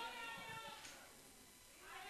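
Faint, distant voices in a large room, fading to a near-silent lull about halfway through before faint voices return near the end.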